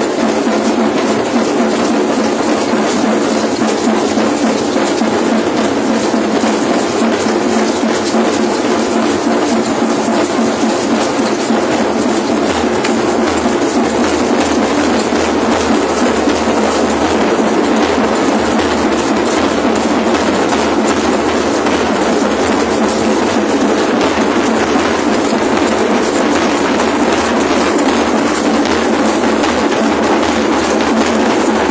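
Drumming and rattling from a troupe of procession dancers: a loud, dense, unbroken clatter with a fast, even pulse.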